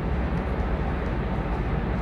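Steady background noise: a low hum under an even hiss, with no distinct events.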